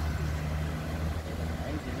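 Road traffic: a motor vehicle's low engine hum from the street, easing off about a second in.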